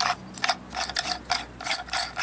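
Metal air cap being screwed by hand onto an old Soviet paint spray gun, its threads and metal parts clicking and grating in a rapid, irregular run of sharp ticks, about five a second.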